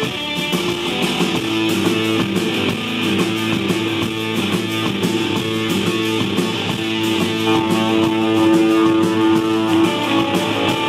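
Live psychedelic rock band playing: electric guitar over a fast, steady drum beat. A held note swells louder near the end.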